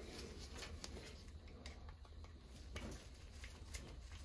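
Faint scattered clicks and scrapes of a flat screwdriver and gloved hands working on a Honeywell zone valve powerhead's metal housing, over a low steady hum.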